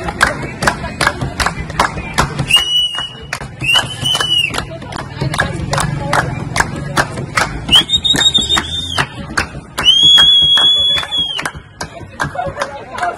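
A group of people clapping in a steady rhythm, about three claps a second. Four long, steady, shrill high notes are held over it, each about a second, and the last one near the end is the loudest.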